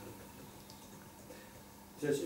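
Quiet room tone in a pause between speech, with a faint steady hum.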